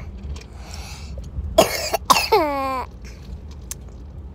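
A person coughing twice, sharply, about a second and a half in, the second cough trailing off into a voiced sound. Under it runs the low, steady road rumble inside a moving car.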